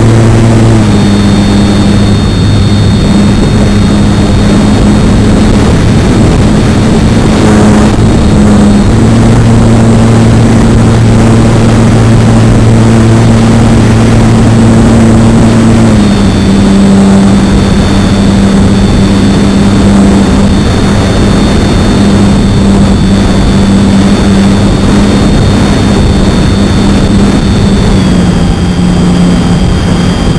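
Electric motor and propeller of a HobbyZone Super Cub RC plane running through the flight, heard from an onboard camera with rushing air noise over it. The steady hum and its high whine step in pitch with throttle changes: down about a second in, up around nine seconds, and down again around sixteen and twenty-eight seconds.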